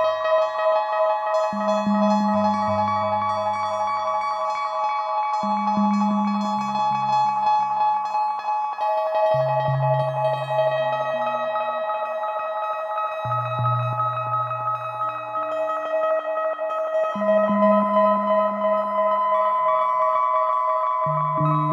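Eurorack modular synthesizer playing a slow generative ambient piece with heavy delay: a sustained bed of overlapping high tones over a second voice of low bass notes, a new one every two to four seconds, each fading out.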